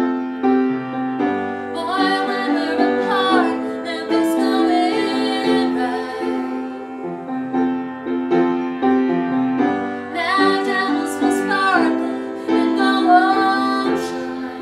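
Upright piano playing chords, with women singing over it in phrases. The voices drop out for a few seconds in the middle and come back near the end while the piano carries on.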